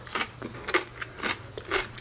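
A metal fork stirring pickled red onion slices in brine in a plastic tub, giving a run of irregular small wet clicks and scrapes.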